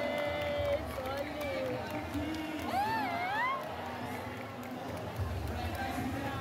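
Voices at a crowded show: a drawn-out call held on one pitch for the first second or so, then, about halfway through, a higher call whose pitch slides up and down, over audience chatter.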